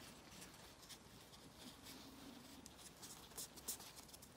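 Near silence with faint soft rubbing and a few light ticks as fingertips press a folded strip of modelling clay down on a plastic cutting mat.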